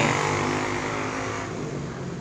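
A vehicle engine running steadily and slowly fading away.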